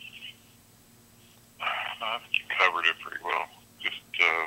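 A voice coming through a mobile phone's speaker held up to a microphone. The speech sounds thin and narrow like telephone audio, with a few short phrases in the second half after a quiet start.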